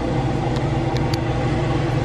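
A steady low mechanical hum, with a few faint clicks.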